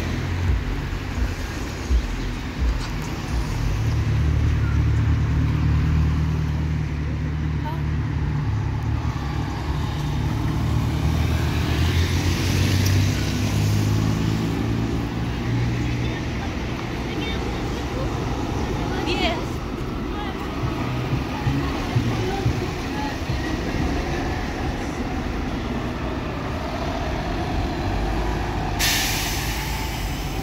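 City bus diesel engine, a Volvo B290R, pulling away with traffic around it. Its low rumble builds a few seconds in, and its pitch rises as it accelerates. A short hiss comes near the end.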